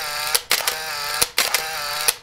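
Countdown sound effect: short mechanical whirs repeating a little faster than once a second. Each whir ends in a sharp click and a brief break, one for each number of the countdown.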